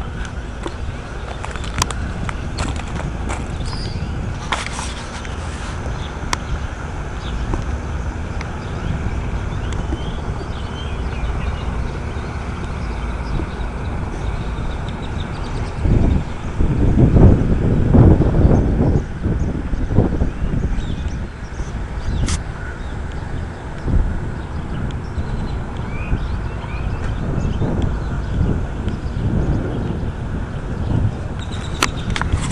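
Wind buffeting a handheld camera's microphone: a steady low rumble that gusts much louder for a few seconds just past the middle.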